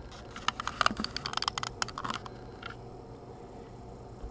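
A quick, irregular run of light clicks and ticks from paper and the camera being handled, bunched in the first two and a half seconds, then only a faint steady background.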